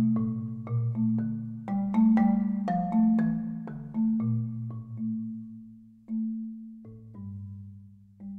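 Solo marimba played with soft mallets, mostly in its low register: a run of struck notes and chords that slows after about four seconds into a few sparse, fading notes.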